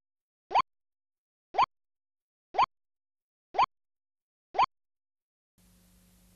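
Countdown clock's electronic tick sound effect: a short rising 'bloop' once a second, five times. Near the end the silence breaks into a faint steady hum.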